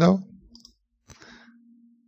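End of a spoken word, then a faint single computer mouse click about a second in, over a faint steady low hum.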